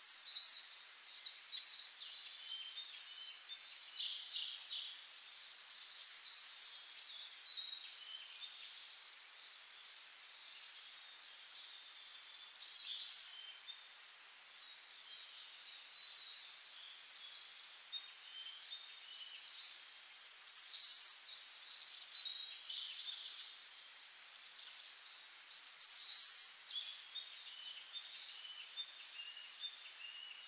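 Birds singing: bursts of short high chirps every few seconds, and twice a long, thin, high trill held for about three seconds, once around the middle and once near the end.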